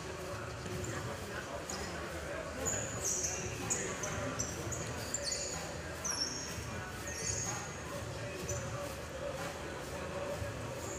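Echoing sports-hall ambience with distant voices and about a dozen short, high squeaks of athletic shoes on the wooden court floor, clustered between about a second and a half and eight seconds in.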